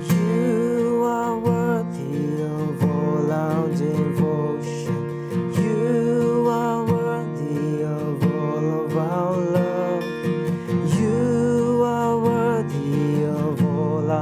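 Steel-string acoustic guitar capoed at the third fret, strummed in 6/8 with a down, up, up, down, down, up, down, up pattern through the G-shape chords G, G/B, C, Em7, G and C, sounding in B-flat. A man sings the chorus melody over it in held phrases.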